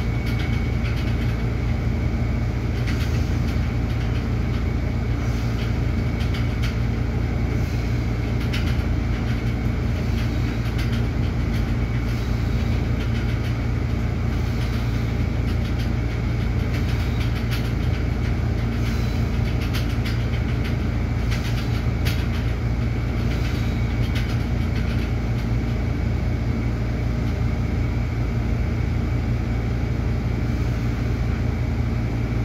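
Steady low machine hum that does not change over the whole stretch, with faint light clicks now and then.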